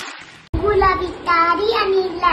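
A young girl singing, starting abruptly about half a second in after a brief hiss, with held notes that slide between pitches.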